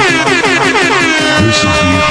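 Electronic dance music from a Manyao-style DJ remix: a loud, horn-like synth sound slides down in pitch and settles into a held note about halfway through, over a steady kick-drum beat.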